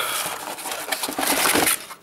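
Cardboard rustling and scraping with many small crackles as the flap of a cardboard carton of protein bars is pulled open by hand; it fades out near the end.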